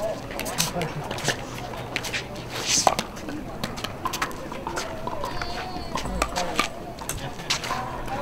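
Scattered sharp pops of pickleball paddles hitting plastic balls on surrounding courts, irregular and overlapping, with faint voices in the background.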